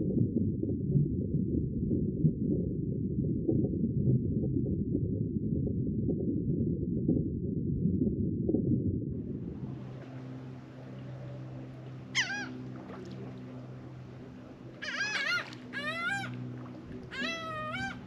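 Muffled churning of water against a submerged action camera. It cuts off about halfway through to a quieter open-air background with a low steady hum, over which come several clusters of short high calls, each sweeping down in pitch.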